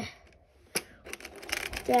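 Plastic clicks and rattle from a die-cast toy car and plastic Hot Wheels track parts as the car is pushed by hand down a ramp: one sharp click about a second in, then a quick run of clicks near the end.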